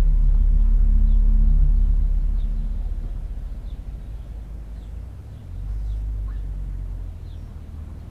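A low rumble with a steady hum, fading away over the first few seconds, then swelling again more quietly about five and a half seconds in, with faint high chirps scattered through it.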